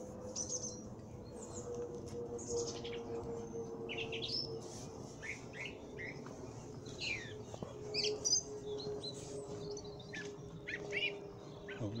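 Small birds chirping and calling in quick, scattered notes throughout, over a steady faint hum that slowly falls in pitch.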